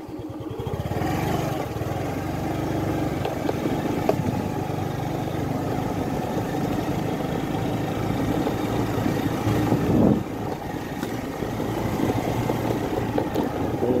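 A motor vehicle's engine running steadily, swelling briefly about ten seconds in and then dropping back.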